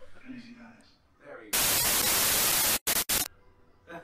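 TV-style static hiss used as a transition effect: a loud burst lasting just over a second that cuts off suddenly, then two short crackles of static.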